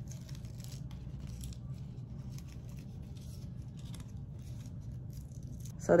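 Scissors snipping through a sheet of adhesive vinyl, with light rustling of the vinyl and its backing as the pieces are cut apart, over a steady low hum.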